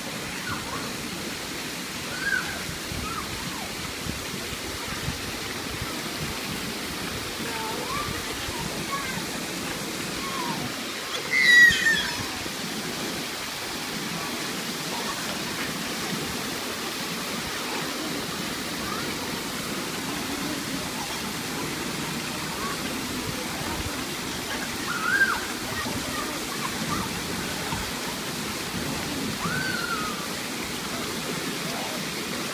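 Shallow outdoor pool with water sloshing and splashing in a steady rush, under scattered children's voices. A child's high-pitched shriek rings out about halfway through, the loudest sound, with a shorter squeal later on.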